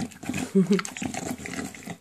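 English bulldog eating raw minced food from a stainless steel bowl: wet smacking and chewing clicks, with a brief grunt about half a second in.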